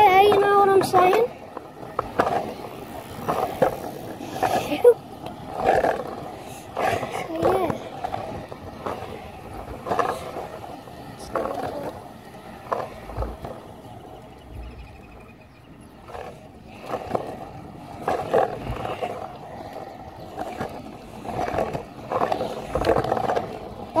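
Scooter wheels rolling over a concrete footpath, a steady rolling noise broken by irregular knocks as the wheels cross joints and cracks in the pavement.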